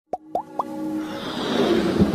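Intro sound effects with music: three quick rising 'bloop' pops about a quarter second apart, then a swelling whoosh that builds in loudness toward the end.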